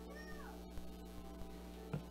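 Steady electrical hum from the church sound system. About a quarter second in comes a small child's brief, meow-like high-pitched call that rises and falls. A click comes just before the end.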